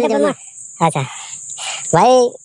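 Insects droning steadily at a high pitch, one unbroken buzz under short bursts of a man's voice.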